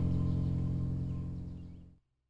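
Bowed cello and keyboard holding a final sustained chord, fading out and going silent near the end.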